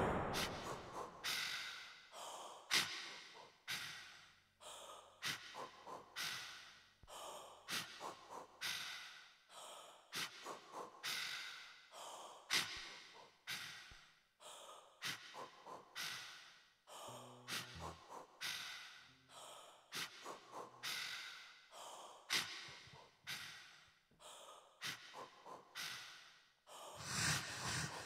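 Quiet, irregular breath-like puffs, about one or two a second, with a brief low murmur a little past the middle; a louder sound starts up again near the end.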